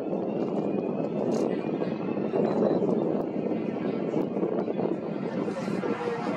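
A Bombardier Dash 8 Q400 turboprop's two Pratt & Whitney PW150A engines running at low power as it taxis, a steady rumbling hum with a faint high whine that rises slowly.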